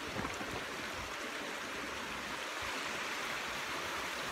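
Small mountain stream running over rocks, a steady rush of water.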